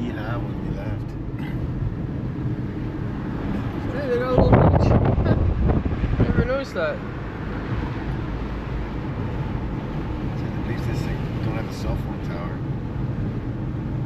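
Steady road and engine rumble inside a moving car's cabin. It swells louder for about two seconds, about four seconds in.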